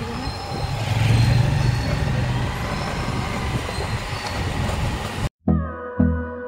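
Road traffic noise: a steady wash of passing vehicles, with a low rumble louder for a second or two starting about a second in. Near the end the sound cuts off abruptly and background music with a slow, even beat begins.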